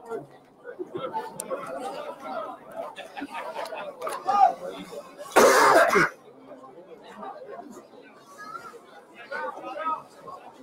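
Low background chatter of voices, with one loud cough close to the microphone about halfway through.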